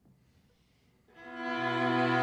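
String quartet starts playing after about a second of near silence: the violins and viola enter on held bowed notes, and the cello joins half a second later on a low sustained note. Each instrument's pitch is tuned to the average annual temperature of one latitude band: cello for the equator, viola for the mid-latitudes, violins for the high latitudes and the Arctic.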